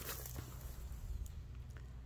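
Faint rustling and light taps of a plastic-sleeved package of paper gift wrap being handled and turned over, over a low steady hum.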